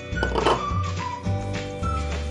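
Background music: steady held notes over a bass line with a high melody on top. About half a second in, a brief rush of noise.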